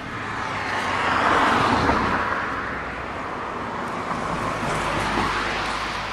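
Cars passing on the street: tyre and engine noise swells to a peak about a second and a half in and fades, then a second, weaker pass near the end.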